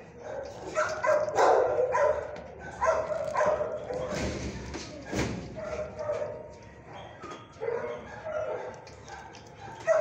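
Dogs barking and yipping in a shelter kennel, a string of short calls one after another.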